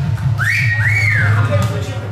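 Two high whistles, each sliding up and then falling back, in a club between songs, over a steady low drone from the stage.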